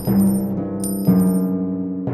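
Gold coins clinking a few times as they are counted, over background music with low held notes.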